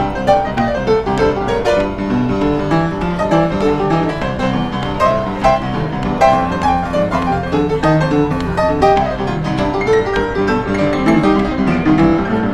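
Upright piano played with both hands, a continuous run of many quick notes without a break.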